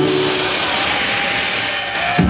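Live house/techno set in a breakdown: the kick drum and bassline drop out, leaving a loud, sustained synthesized noise sweep with a faint held synth tone under it.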